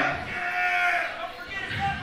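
Men's voices yelling in long, drawn-out calls at a loud rock show.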